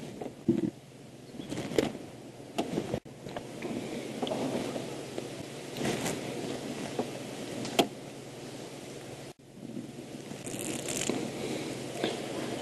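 Elephants feeding in the bush: rustling vegetation with scattered sharp cracks of branches snapping.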